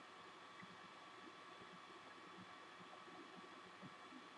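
Near silence: a faint, steady background hiss with a low hum.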